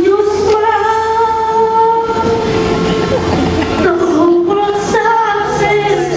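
A boy singing into a microphone in long held notes that shift pitch every second or two, over a low musical accompaniment.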